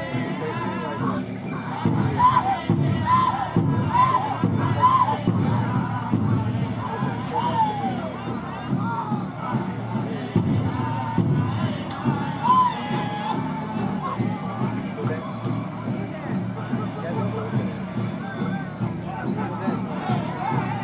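Music mixed with crowd sound: many voices calling and cheering, with a run of short, high, rising-and-falling calls a few seconds in and a few more later.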